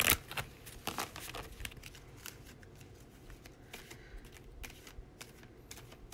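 Handling noise from a deck of tarot cards: a few sharp clicks and rustles in the first second or so, then faint light taps and rustling.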